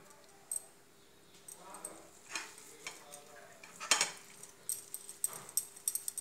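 Quiet kitchen handling sounds: a few scattered clicks and knocks of utensils and the rolling board being handled, the sharpest about four seconds in, over a faint steady hum.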